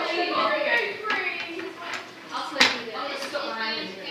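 People talking in the background, with a single sharp click a little past halfway.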